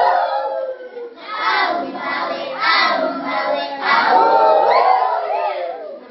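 A group of children singing loudly together in phrases, with a short break about a second in.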